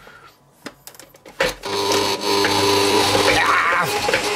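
Bosch stand mixer (kitchen machine): a few light plastic clicks as the attachment is fitted, then a sharp knock about a second and a half in and the motor starts running with a steady hum.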